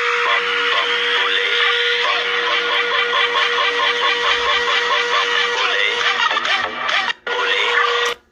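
Music from a TikTok video playing through a phone's speaker, dense and rhythmic with a steady held tone underneath; it drops out for a moment near the end.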